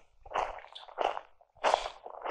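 Soft footsteps, three short steps a little over half a second apart.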